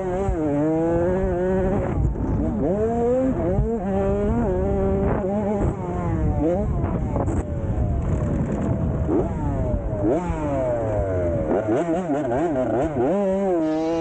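Dirt bike engine revving hard, its pitch climbing and dropping again and again as the throttle is opened and closed.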